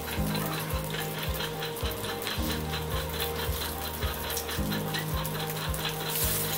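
Hot oil sizzling steadily as boiled egg halves fry in an aluminium kadai, under background music with a steady beat.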